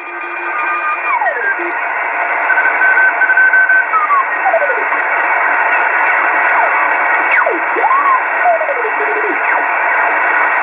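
Kenwood TS-450S HF transceiver's speaker hissing with band noise as the tuning knob is turned across the 20-metre band. Whistling carrier tones slide down in pitch through the hiss one after another, with one steady tone held briefly. The receiver, repaired for poor reception, is bringing in the band.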